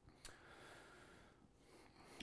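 Near silence, with a person's faint breath out lasting about a second.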